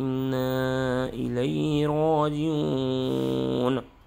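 A man's voice reciting Quranic Arabic in a melodic chant, holding long, slowly ornamented notes. The recitation breaks off just before the end.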